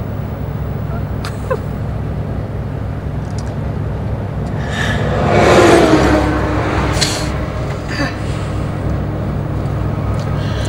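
Steady low engine and road rumble of an open convertible cruising on a highway. About five seconds in, a large truck passes close alongside, swelling loud and falling in pitch as it goes by.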